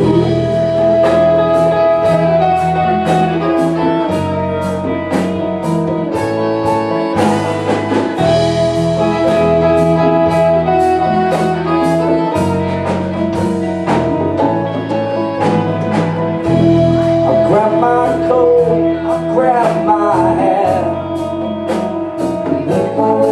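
Live blues-funk band playing a groove: a drum kit keeping an even beat under electric bass, electric guitars and congas, with long held notes of a lead line on top.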